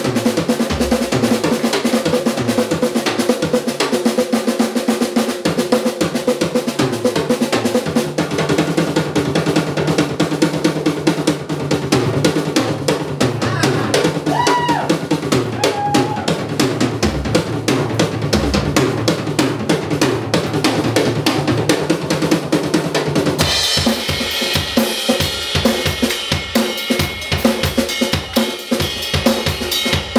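Drum solo on a Tama drum kit: rapid snare and tom strokes with bass drum and rolls. About two-thirds of the way through, cymbals come in heavily over the drumming.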